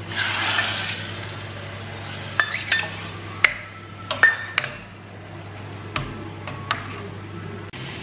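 Steel ladle stirring thick curry in a stainless steel pan, with a short wash of noise at the start and then several sharp metal clinks against the pan, each ringing briefly.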